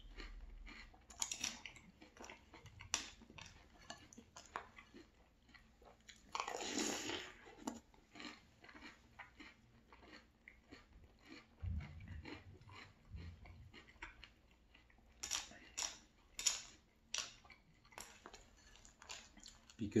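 A person chewing a mouthful of crunchy Very Berry Cheerios in milk close to the microphone: a long run of short, crisp crunches and mouth clicks. There is a longer rustling stretch about seven seconds in, and a brief low hum a few seconds later.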